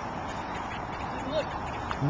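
Steady outdoor background noise, an even hiss like wind on the microphone, with one short faint voice-like chirp about a second and a half in.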